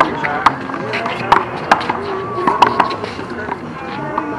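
A small rubber handball being slapped by hand and smacking off the wall during a fast one-wall handball rally: several sharp, irregular slaps in quick succession.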